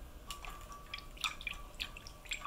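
Faint drips and small ticks of oil-based liquid food colour being dropped into melted cocoa butter in a glass measuring jug, a handful of short sounds spread over two seconds.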